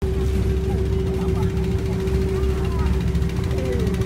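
Boat engine running at a steady speed: a constant low drone with a steady hum on top. Faint voices in the background.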